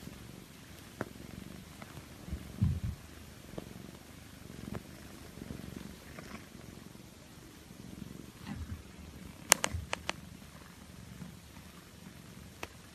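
Long-haired calico cat purring right at the microphone, with a few low bumps and a quick cluster of sharp clicks a little past two-thirds of the way through.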